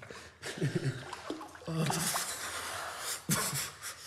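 A man laughing breathlessly and panting, in several short voiced bursts with breathy exhales between them.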